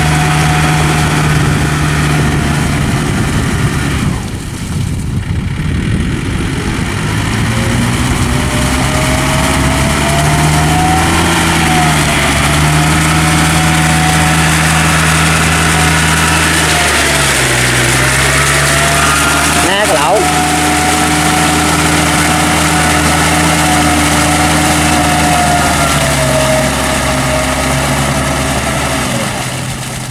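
Diesel engine of a Yanmar tractor on steel cage wheels running under load as it churns through paddy mud. The engine note wavers and dips briefly with the load, and there is one sharp knock about twenty seconds in.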